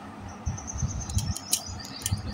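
Small kitchen knife cutting the seed core out of a firm, raw peeled pear held in the hand: scattered crisp clicks and scrapes from about half a second in, with low bumps from handling.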